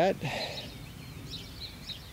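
Small birds chirping several times over a low, steady outdoor background noise.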